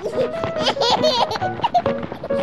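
A baby giggling and laughing in short, wavering bursts over upbeat children's background music.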